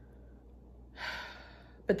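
A woman's audible breath about a second in, lasting about half a second, as she feels a twinge in her chest that she calls all muscular.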